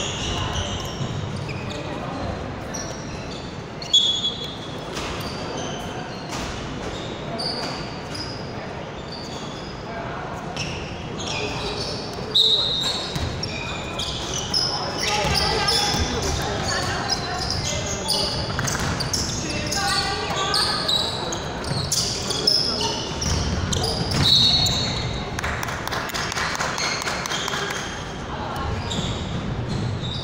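Indoor basketball game on a hardwood court, echoing in a large hall: a ball bouncing on the floor, sneakers squeaking in short high chirps, and players calling out. There are a few louder thumps, about four seconds in and again near the middle.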